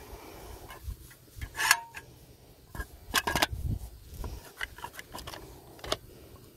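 Red manual caulking gun being loaded and worked: the plunger rod is slid back, a tube of construction adhesive is seated in the metal frame, and the trigger is squeezed. This gives separate metal clicks and rattles, loudest a little past halfway, then a run of lighter clicks.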